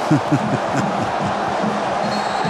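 Men's voices and laughter from the broadcast commentators, briefly in the first half second, over the steady crowd noise of a football stadium.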